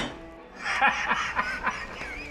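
A man laughing in short bursts for about a second, starting just after half a second in, over faint background music.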